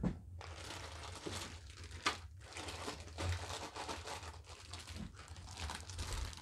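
Clear plastic packaging bags crinkling and rustling as kit parts are handled, with a sharper crackle about two seconds in and another a little after three seconds.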